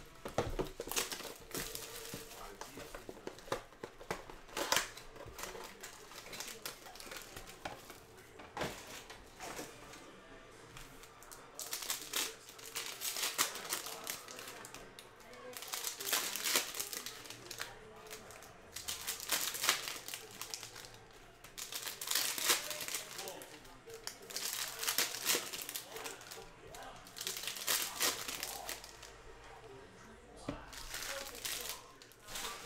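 Plastic shrink wrap and foil trading-card pack wrappers crinkling and tearing as a Panini Prizm football blaster box is unwrapped and its packs ripped open. A few light clicks come first, then a series of separate loud crinkling bursts about every three seconds through the second half.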